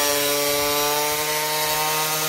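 Electric angle grinder running at a steady speed while cutting partway through a pipe: one constant pitch with a grinding hiss over it.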